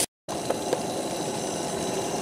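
After a brief dropout, a steady hiss of gravy simmering in a cast-iron Dutch oven, with a couple of faint clicks about half a second in.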